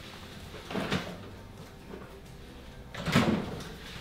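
Refrigerator door: a short knock about a second in as it opens, then a louder thud about three seconds in as it is shut.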